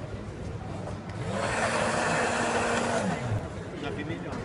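A small electric motor with an airy hiss runs for about two seconds: its hum rises as it spins up about a second in, holds steady, then falls away as it winds down near the three-second mark. Voices chatter in the background.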